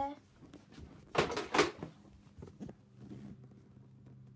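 Lawnmower engine running faintly in the distance as a steady hum, clearer in the second half. About a second in, two loud short clatters stand out above it.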